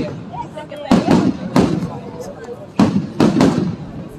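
Aerial fireworks bursting overhead: four sharp, loud bangs, about a second in, again half a second later, and a close pair near the end, with crackle between them.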